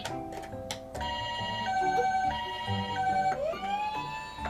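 Battery toy ambulance playing its electronic siren: a two-tone hi-lo pattern that switches pitch about every two-thirds of a second, then a rising wail near the end.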